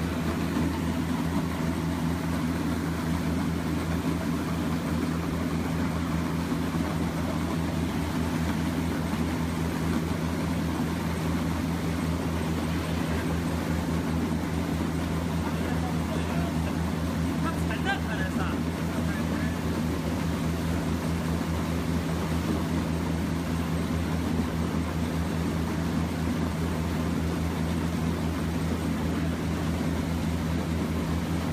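Plastic film pre-washer machine running, a steady low machine hum with a noisy wash over it.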